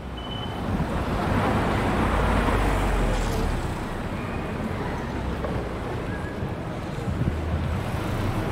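Wind buffeting the microphone over a steady outdoor hum, the low rumble heaviest two to three seconds in.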